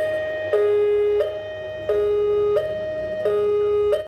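Railway level-crossing warning alarm: an electronic two-tone signal switching back and forth between a higher and a lower note, each held about two-thirds of a second.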